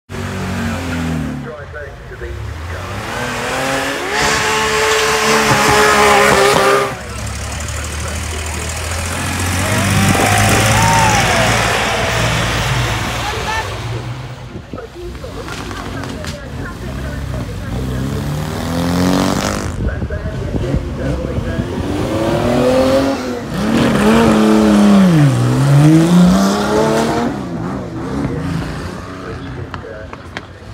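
Classic cars accelerating hard away from a start line one after another, each engine revving up with a steeply climbing pitch as it pulls away.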